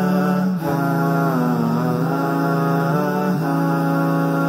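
Wordless vocal music: a voice chanting long, held notes, with slow dips in pitch about a second and a half in and again around three seconds.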